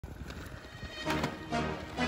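Background music with pitched notes and a steady percussive beat, growing louder about a second in.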